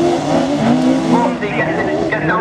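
Several autograss special racing cars' engines running hard on a dirt oval, their pitch rising and falling as the cars slide through a corner and accelerate away.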